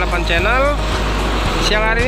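A person's voice, with rising and falling pitch, over the steady noise of road traffic passing close by.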